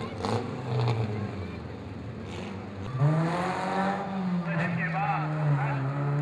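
A four-cylinder Pure 4 race car's engine comes up about three seconds in, rising in pitch and then running steadily, with people talking over it.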